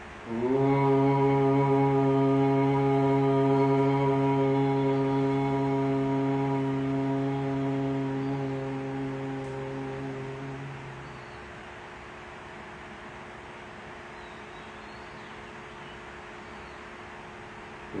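A man chanting one long Om on a single steady pitch, held for about ten seconds and fading into a hum, followed by several seconds of quiet room tone; a second Om begins at the very end.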